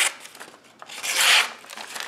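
A freshly sharpened knife blade slicing through a held-up sheet of lined notebook paper, one rasping cut about a second in lasting about half a second. The slice is a sharpness test of the edge just finished on ceramic stones.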